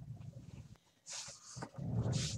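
Quick, breathy panting, a few short breaths a second, with gaps.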